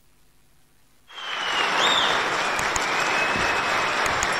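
Audience in a large hall applauding, the clapping starting suddenly about a second in and then keeping up steadily.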